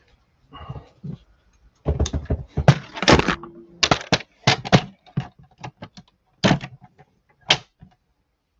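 A plastic paper trimmer being handled: a run of irregular knocks and clatters as it is lifted and set down on the craft desk and cardstock is slid onto it, loudest about three seconds in.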